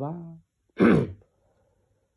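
A spoken syllable trails off, then a person clears their throat once, a short loud rasp about a second in.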